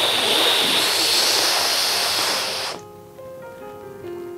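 A long, loud hissing inhale drawn in forcefully through clenched teeth: the sitkari (sheetkari) cooling breath of yoga pranayama. It is steady and cuts off sharply just under three seconds in, over soft background music with held notes.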